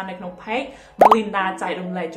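A short, loud 'bloop' pop sound effect about a second in, a quick upward sweep in pitch, of the kind added in editing as an on-screen badge pops up. It plays over a woman's talking.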